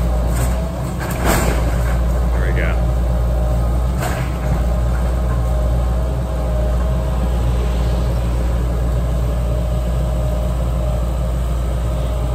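Diesel engine of a John Deere 160C LC hydraulic excavator running steadily under load as it tears apart a wood-frame house. Sharp cracks of breaking timber come about a second in and again about four seconds in.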